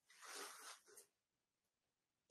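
Near silence, with one faint, short hiss in the first second.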